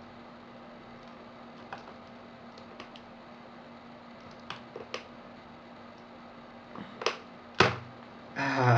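Flat flex cable being peeled by hand off a TI-83 Plus calculator's circuit board: faint scattered clicks and crackles as its glued contacts tear loose, with two louder snaps near the end.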